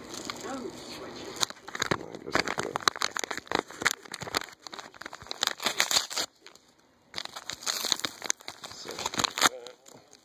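Padded mailing envelope being torn open and handled by hand: irregular crinkling and crackling of paper and bubble-wrap lining, with a brief pause about six seconds in.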